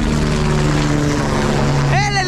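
Helicopter flying overhead: a steady engine and rotor drone with a few held low tones that shift slightly in pitch.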